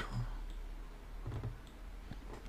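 A few faint clicks over a low, steady hum, in a pause between speech.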